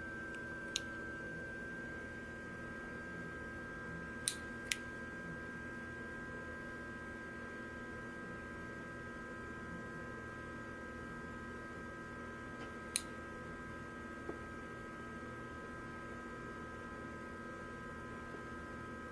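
A faint, steady electrical hum of several held tones, broken by a few short, sharp clicks of a metal electric lighter being handled: one about a second in, two close together around four seconds, and one near thirteen seconds.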